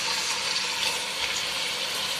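Chicken quarters frying in hot olive oil in a pot, a steady sizzling hiss as they start to brown.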